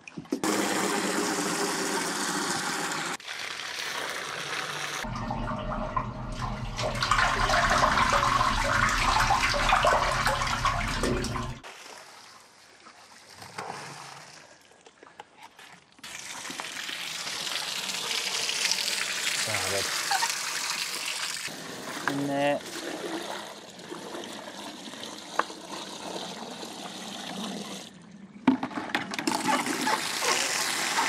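Water pouring and splashing as paving and a drain gully are washed down with soapy water, heard in several separate stretches that start and stop abruptly.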